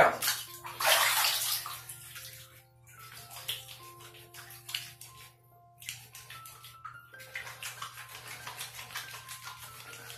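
Water splashing loudly about a second in as a shampoo bar is wetted, then wet hands rubbing the bar in many short, irregular strokes to work up a lather. Quiet background music with held notes plays underneath.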